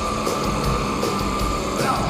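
Black metal band playing live, electric guitars over a dense low end, with one high note held steady throughout.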